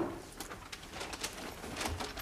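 People moving quietly about a room: the tail of a door thud at the very start, then a few soft knocks, footsteps and coat rustling, with a low bump near the end.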